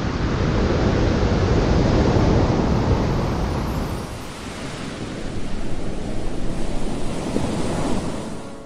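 Ocean surf: waves breaking and washing in as a steady rushing noise, swelling to a big surge about two seconds in, easing off, then building again toward the end.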